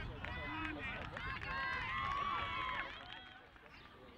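Several voices shouting and calling at once, overlapping. The calls are loudest in the middle and die away near the end.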